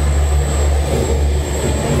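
Gondola lift station machinery running: a steady low hum from the drive and bullwheel as the cabins are carried slowly through the terminal.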